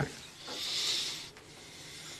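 A person's breath between sentences: one soft hiss lasting about a second, followed by low room tone.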